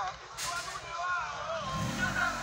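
Indistinct voices talking in the background, with a brief hiss about half a second in.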